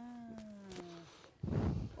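A dog whining: one drawn-out note about a second long, sliding slightly down in pitch, followed near the end by a short burst of low noise.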